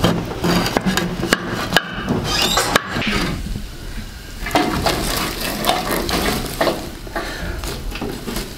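A wooden spatula scraping and knocking in a frying pan, mixed with the rustle and crackle of dry twigs being handled and pushed into a wood-burning stove. Irregular sharp clicks and knocks come throughout.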